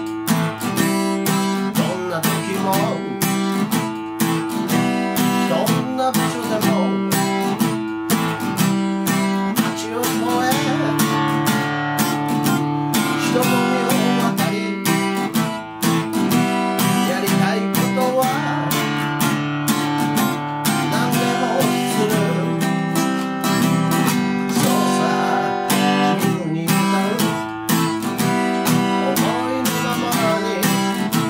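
Acoustic guitar strummed steadily in chords that change every second or two. The small-bodied guitar has had its finish stripped and been oiled with perilla oil.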